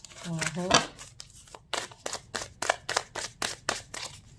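Tarot cards shuffled by hand: a quick run of crisp card slaps, about five a second, from about a second in. Near the start there is a brief voiced sound from the reader.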